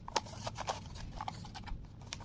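Slate pencils clicking and clattering against one another as bundles of them are handled in a cup, with a string of sharp, short clicks.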